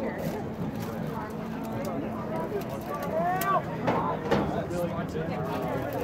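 Players' and spectators' voices calling out across an outdoor soccer field, with a louder shout about three seconds in and a sharp thump just after four seconds, over a steady low background hum.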